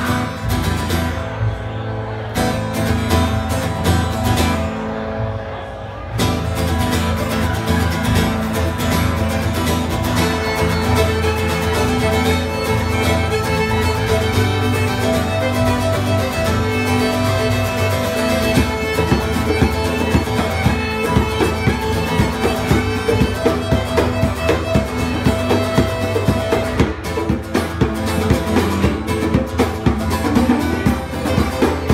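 Live instrumental folk tune on fiddle, acoustic guitar and hand drum. The guitar opens alone for the first few seconds, then the fiddle melody and the drum come in, with the drum beat growing stronger toward the end.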